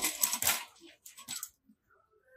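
Wire shopping cart rattling as it is pushed: a quick run of metal clicks and clatters in the first half second, dying away to a few light knocks by about a second and a half.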